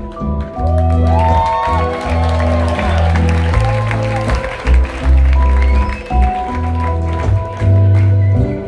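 Live band playing an instrumental passage of a rock-pop song: a heavy bass line stepping between notes, drums, guitars and keyboard, with some crowd noise in the hall.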